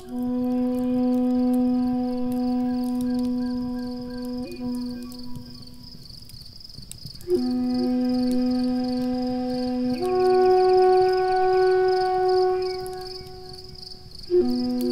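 Native American flute playing slow, long held low notes. The flute pauses briefly past the middle, comes back with a new phrase, and steps up to a higher held note about ten seconds in. Behind it run a steady high pulsing chirp and the faint crackle of a wood fire.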